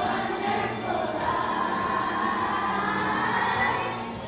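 Children's choir of many young voices singing with musical accompaniment, holding one long note that slides upward in pitch.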